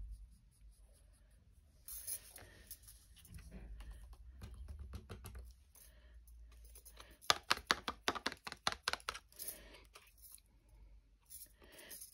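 A rapid run of light taps lasting about two seconds, from a stamped card being tapped to knock excess embossing powder off.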